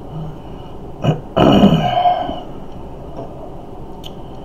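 A man's single loud non-speech vocal outburst about a second and a half in, lasting under a second, just after a brief click.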